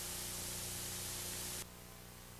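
Steady hiss of tape noise with a faint low hum underneath, from an old VHS recording. It drops suddenly to a quieter hiss near the end.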